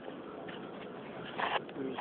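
Quiet room noise with a few faint clicks from handling, then a voice beginning to speak near the end.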